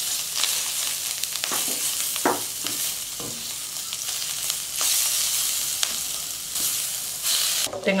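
Butter melting and sizzling in hot oil in a stainless steel wok with garlic, ginger and dried chillies, stirred with a silicone spatula that taps against the pan a few times. The sizzle swells twice in the second half.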